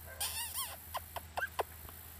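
Miniature schnauzer puppy, about four weeks old, squealing: one warbling, high-pitched whine, then four short squeaks.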